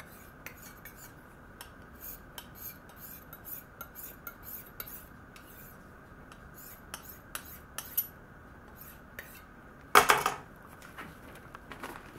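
Knife edge drawn in light, quick strokes against a handheld diamond sharpening plate, a run of faint irregular metallic ticks and scrapes as a burr is worked off the edge. A louder knock about ten seconds in.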